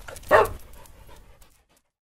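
A single short dog bark as part of a logo sound sting, fading away within about a second.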